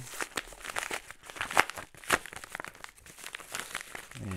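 A yellow padded paper envelope being torn open by hand, the paper ripping and crinkling in irregular crackles, loudest about a second and a half and two seconds in.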